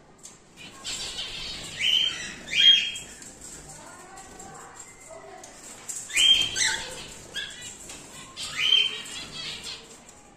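Cockatiels calling, with loud, short calls in three bursts, about two seconds in, about six and a half seconds in and near nine seconds, over softer background calls.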